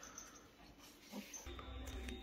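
Mostly quiet room tone, with one brief, faint whimper from a Staffordshire bull terrier puppy a little past a second in; a steady low hum comes in shortly after.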